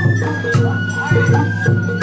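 Sawara bayashi festival music played live: a shinobue bamboo flute holding long high notes over a steady beat of drums, including a tsuzumi hand drum.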